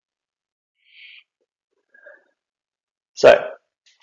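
A faint breath about a second in, then one loud, short throat sound from a man about three seconds in, in a pause between sentences of speech.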